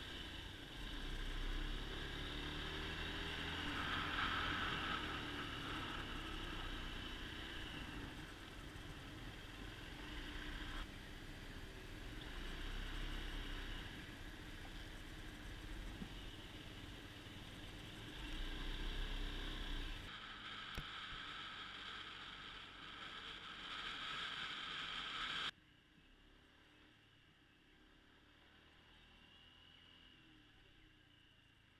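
Honda SH150i scooter under way: its single-cylinder engine running under a steady rush of riding wind on the microphone, swelling and easing with speed. Near the end the sound drops away abruptly to a much quieter background.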